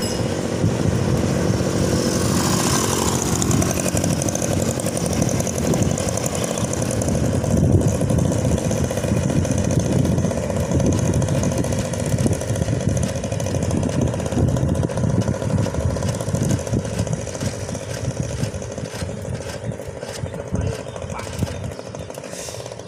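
Wind buffeting the microphone of a camera riding on a moving bicycle, with tyre and road rumble, as a steady loud rush. About three seconds in, a passing engine drops in pitch as it goes by.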